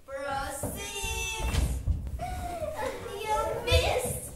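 Children's voices: high-pitched calls and spoken exclamations from young performers.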